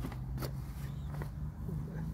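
Clothes being pulled out of a nylon duffel bag: a couple of brief rustles of fabric over a steady low hum.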